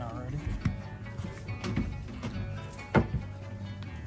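Background music with faint talk, broken by a few sharp clicks and knocks of hard objects being handled on a glass counter. The loudest knock comes about three seconds in.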